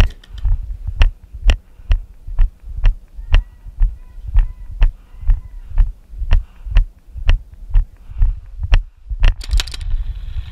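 Footsteps of a person walking at a steady pace: dull thumps heard close to the microphone, about two a second.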